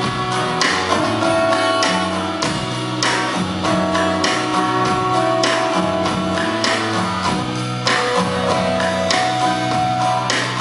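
Live rock band playing an instrumental passage with guitar, bass, drums and keyboard, cymbals struck regularly through it.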